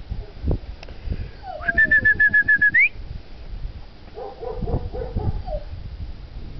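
A quick run of about eight short, high whistled notes, ending in an upward slide, a couple of seconds in, with a fainter, lower patterned call later on and dull low thuds throughout.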